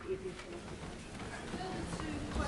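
Low background murmur of many MPs' voices, with no single clear speaker.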